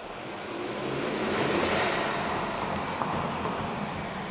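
2016 Ford Mustang with the 2.3-litre EcoBoost turbocharged four-cylinder, driving, heard from inside the cabin: engine and road noise that swells over the first couple of seconds and then eases off.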